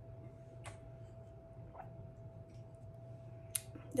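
A person gulping a drink straight from a glass bottle, with about three faint swallows over a steady low hum.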